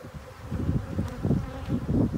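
A mass of honeybees buzzing in an open hive box, getting louder about half a second in.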